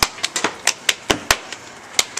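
Handclaps keeping a beat: about eight sharp claps in quick, uneven succession, pausing briefly in the second half.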